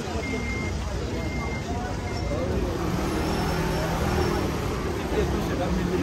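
An electronic beeper sounds about once a second, four short high beeps that then stop. A vehicle engine hums steadily under it, with passers-by talking.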